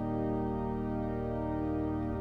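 Organ music: a single full chord held steadily, without decay.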